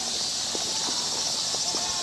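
Footsteps of a walker on a dirt park path, a few soft steps, over a steady high-pitched outdoor hiss; a thin held tone starts near the end.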